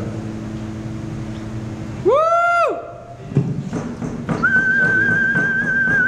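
The acoustic guitar's last chord fades out, then an audience member gives a short rising-and-falling 'whoo' about two seconds in. A few scattered claps follow, and then a long, steady, high whistle held to the end.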